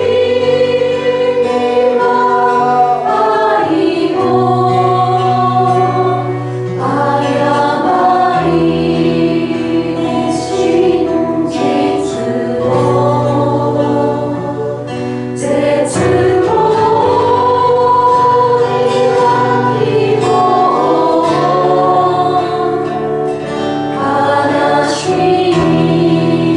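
Worship song: several voices singing slowly in long held notes over low bass notes that change every few seconds.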